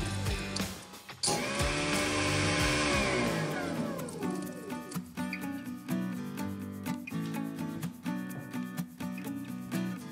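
Kitchen garbage disposer, used as a biomass shredder, running empty: its motor hum falls in pitch as it winds down, is switched on again briefly about a second in, and coasts to a stop by about four seconds in. Background music fills the rest.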